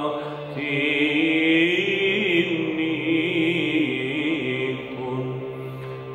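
A male cantor chanting a Byzantine Orthodox hymn, the melody moving in slow, ornamented turns over a steady low drone.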